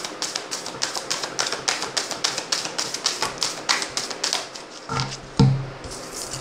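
A deck of cards being shuffled by hand: quick, crisp card clicks and snaps, several a second. A louder low thump comes near the end.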